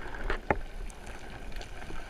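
Muffled underwater noise picked up through a camera's waterproof housing as a freediver swims, with scattered faint clicks and one sharper knock about half a second in.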